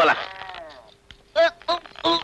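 Film dialogue: a voice drawn out into a long vowel that fades away, then a few short spoken syllables about a second and a half in.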